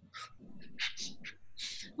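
A woman making several short, breathy sounds without words between spoken lines, each lasting a fraction of a second and fainter than her speech.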